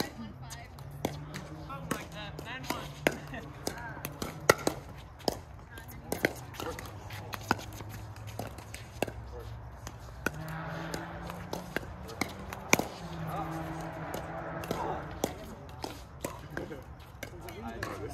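Pickleball paddles striking a hard plastic pickleball, along with the ball bouncing on the court: irregular sharp pops from rallies, the loudest about four and a half and twelve and a half seconds in.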